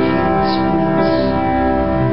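Piano playing held chords that ring on steadily, with no singing.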